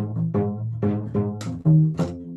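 Solo upright bass played pizzicato: a run of plucked notes, several a second, each starting sharply and ringing briefly before the next.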